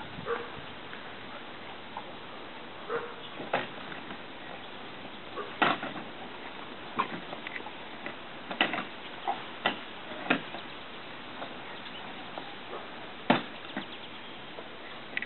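A yellow plastic toy roller-coaster car clunking and knocking against its plastic track as a toddler pushes it back up: about a dozen irregular short knocks, the loudest one near the end.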